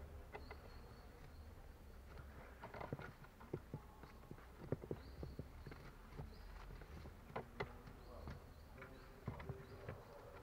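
Faint, scattered clicks and taps of a pleated cabin air filter being handled and seated in its plastic housing cover, over a low steady hum.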